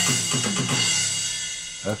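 Sampled acoustic drum kit playing a programmed tom fill: a cymbal crash at the start rings out and fades over the next two seconds, while tom strikes fall in pitch beneath it.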